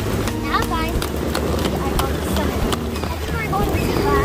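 Small wheeled suitcase rolling over wooden deck boards, its wheels clicking irregularly at the joints, over steady outdoor noise with voices in the background.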